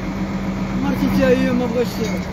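A person's voice speaking briefly over steady street traffic noise with a constant low hum.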